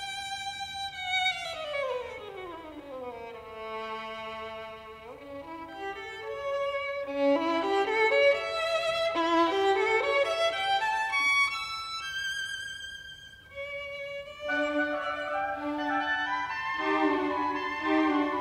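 Background music led by a violin: a long downward slide in pitch about a second in, then a melody of rising and falling notes.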